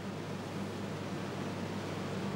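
Steady hum and hiss of computer-room machinery.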